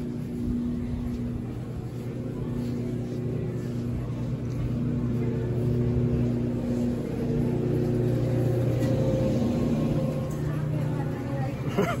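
A person humming a tune to themselves: low held notes that change pitch every second or two, over faint supermarket background noise.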